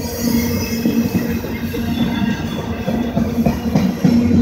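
Autorack freight cars rolling slowly past at close range: a continuous rumble of steel wheels on the rails, with recurring thin metallic squealing tones over it.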